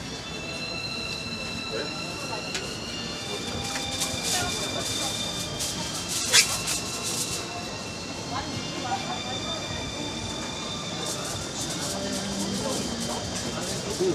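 Sauce-basted skewers sizzling on a hot grill tray, with dense fine crackling and thin steady high whines, and a sharp clink about six seconds in as a utensil is set down on the metal tray.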